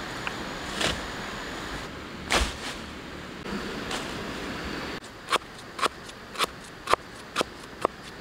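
A cleaver chopping on a round wooden cutting board, sharp strokes about two a second, starting about five seconds in. Before that, a steady outdoor background with a couple of knocks.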